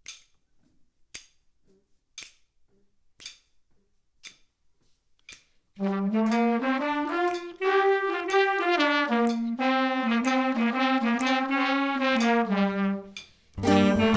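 About six sharp clicks roughly a second apart mark a slow beat. Then a trombone, trumpet and clarinet play a held, harmonised swing intro phrase, and just before the end the full band comes in louder with a bass line under the horns.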